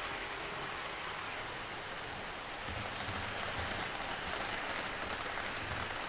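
Electric model train running on three-rail track: a steady whirring rumble of wheels and motor, slightly louder in the second half.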